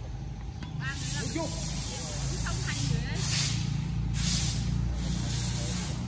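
A steady hiss that comes up about a second in and swells twice in the middle, over a low rumble, with a few brief voices.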